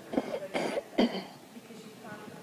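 A person coughing: three sharp coughs in quick succession within the first second or so, much louder than the soft talk around them.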